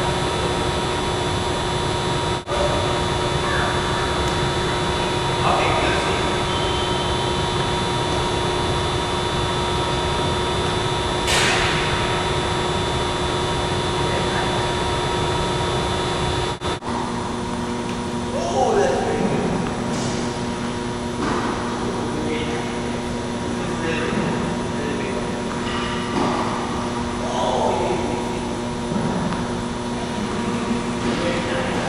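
Steady ventilation drone and hum of a large indoor tennis hall, with a few short snatches of voices. The drone cuts out abruptly twice.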